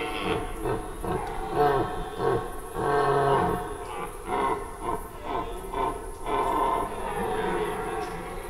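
Red deer stags roaring in the peak rut: a rapid run of short, clipped roars with bending pitch, some overlapping. This is the stag's 'Sprengruf', the chasing call given while driving off rivals.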